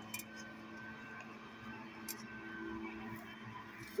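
Faint, steady drone of a distant motor, with a couple of light ticks.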